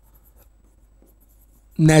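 Faint light taps and scratches of a stylus writing on the screen of an interactive smart board, over a low steady hum. A man's voice starts near the end.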